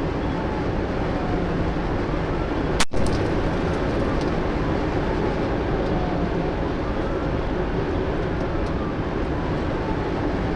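Steady road, wind and engine noise inside a police patrol vehicle in a high-speed pursuit at about 120 mph, with a faint siren wailing up and down in the background. One sharp click comes about three seconds in.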